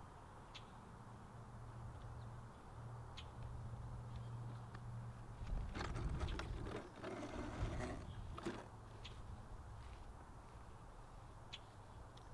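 Faint outdoor background with wind rumble on the microphone. From about five and a half to eight and a half seconds in there is louder rustling and a few knocks as a large RC truck is carried over and set down on the grass, with a few short high chirps scattered through.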